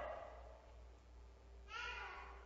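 A quiet pause in a room with a steady low hum. The echo of a shouted word fades away at the start, and a short, faint voice sound comes near the end.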